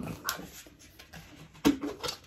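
Plastic reusable cold cup and straw being handled: light clicks and rubbing, with one short squeak about a second and a half in.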